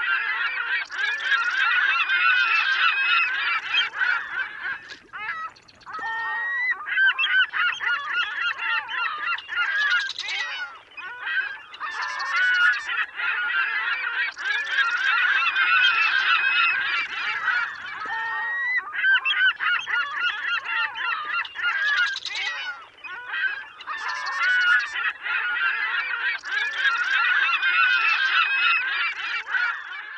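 A large flock of birds honking and calling all at once, a dense chorus with a few brief lulls.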